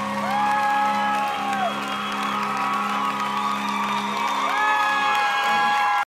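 Live band music ending a song: sustained electric guitar tones slide up, hold and slide back down twice over a steady low hum, with some whoops from the crowd.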